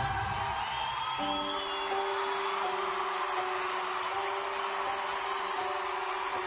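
Music holding a long sustained closing note while a noisy wash of crowd cheering and applause rises over it, with a brief whistle about a second in.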